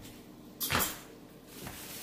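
A kitchen cabinet door knocking shut about two-thirds of a second in, followed by a fainter knock near the end.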